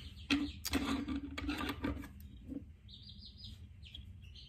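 Baby chicks peeping, with a few short high peeps about three seconds in. Under them, soft clicks and a low hum in the first half.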